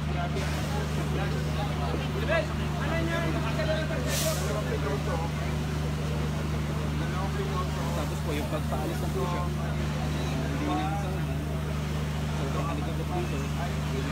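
Indistinct voices of people talking over a steady low engine hum, with a short hiss about four seconds in.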